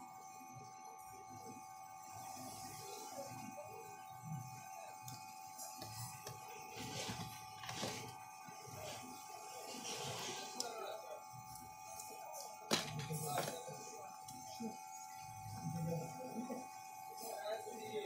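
Faint, indistinct voices in the background over a steady high-pitched electronic whine, with a sharp click about thirteen seconds in.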